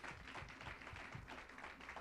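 Faint, scattered clapping from a small congregation: light, uneven applause.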